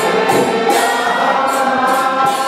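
Devotional kirtan chanting: voices singing over a harmonium's sustained reedy chords, with small hand cymbals striking in a steady rhythm about twice a second.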